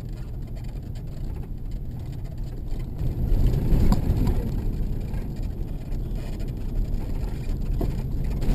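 Car driving on a gravel road, heard from inside the cabin: a steady low rumble of tyres and engine that grows louder about three seconds in, with one brief click near the middle.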